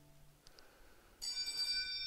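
The last held chord of a recorded hymn fades out. About a second later a steady, high-pitched whine of several tones cuts in suddenly, with hiss.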